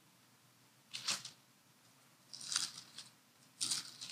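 Pages of a Bible being turned by hand while leafing to find a passage, in three short papery rustles about a second apart.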